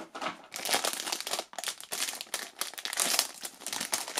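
Foil blind-bag wrapper crinkling and tearing as hands crumple it and pull it open, a dense, continuous run of crackles.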